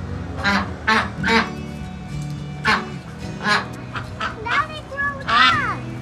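White domestic ducks quacking: about eight short, sharp quacks spread through the few seconds.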